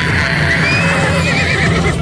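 A pony whinnying: one long call that quavers toward the end, over background music.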